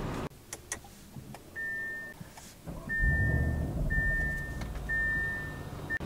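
Audi SQ8 interior warning chime beeping four times, about once a second, each beep a short steady tone. A few light clicks come before it, and a low rumble joins about halfway through.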